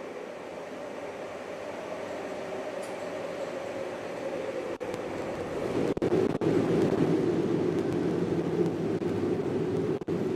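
Soundtrack of the fusion-pulse video: a steady rumble that builds gradually and swells louder about six seconds in, as the tokamak plasma glows brighter.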